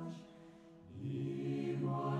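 Chanted vocal music in a mantra style. One long held note fades away, and after a short lull a new, lower held note begins about a second in.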